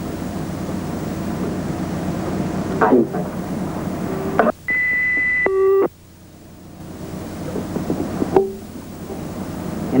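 Steady hiss of an old recording, broken about halfway by a high, steady electronic beep lasting just over a second that ends in a brief lower buzzing tone; after it the hiss drops away and slowly builds back.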